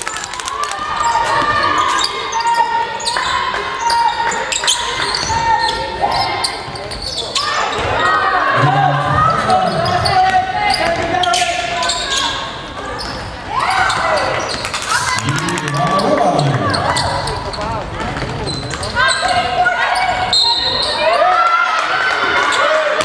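A basketball being dribbled and bouncing on a wooden court during play, with players and spectators calling out, all echoing in a large sports hall.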